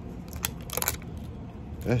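Small clicks from fishing rod parts being handled: one sharp click about half a second in, then a short quick cluster of clicks just before the middle. A man's voice starts near the end.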